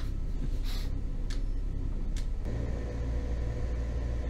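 A motor trawler's starboard engine running on its own at canal speed, a steady low drone heard from the wheelhouse. About two and a half seconds in it grows fuller and louder at the low end.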